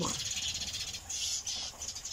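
Sparrows squabbling: a rapid, dense stream of high chirps and chatter that grows louder about halfway through.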